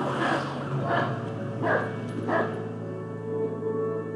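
A dog barks about four times in the first half, over soft ambient music with sustained tones. The barks stop and the music carries on.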